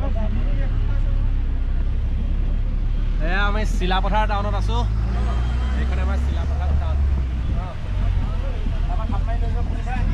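Steady low rumble of a vehicle's engine and road noise, heard from inside the moving vehicle, with people's voices talking over it, most clearly about three to five seconds in.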